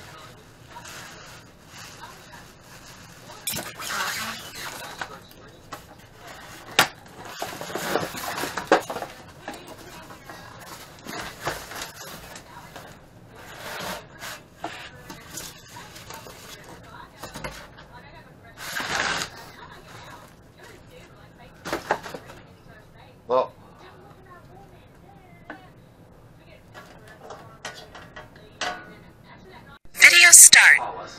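Packing material being handled while a mini lathe is unpacked: plastic sheeting and foam rustling and rubbing in irregular bursts, several of them louder, with a short squeak about 23 seconds in.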